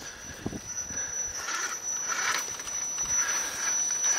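Electric motor and geared drivetrain of a radio-controlled rock crawler (a custom Axial Wraith) whirring faintly as it crawls slowly up a wooden ramp, with a light knock about half a second in.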